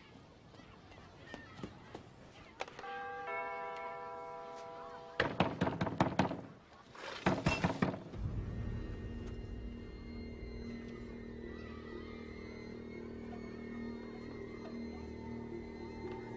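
A doorbell chime rings for about two seconds. Then come two bursts of rapid, heavy knocking on a door. From about halfway in, a low, sustained music drone takes over.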